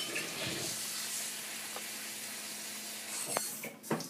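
Water running steadily for about three seconds, then stopping, followed by a small click.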